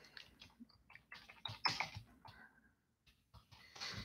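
Faint, irregular clicking of typing on a computer keyboard, thickest in the first two seconds, with a few more keystrokes near the end.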